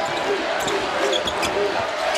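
Basketball being dribbled on a hardwood court, with short squeaks from players' shoes and a steady arena crowd noise underneath.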